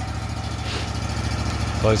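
Wood-Mizer LT35 portable sawmill engine idling, a steady low hum with an even fast pulse.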